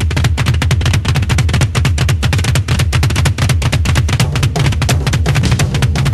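Music with a fast, driving drum beat over a strong bass line.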